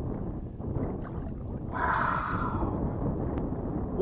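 Wind buffeting the microphone and water against a kayak, a steady low rumble, with a short rushing noise about two seconds in.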